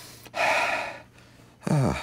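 A man's loud gasping breath, about half a second long and starting about a third of a second in: hyperventilating. A man starts speaking near the end.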